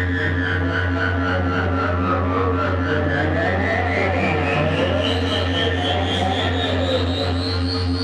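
Live electronic noise music: a steady low drone with sustained tones above it, and a high whistling tone that sinks a little at first, then climbs slowly and steadily through the rest of the passage, over a fine pulsing texture.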